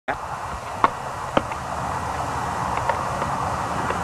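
Two sharp, short reports from a long gun about half a second apart near the start, over steady wind noise on the microphone, with a few faint clicks later.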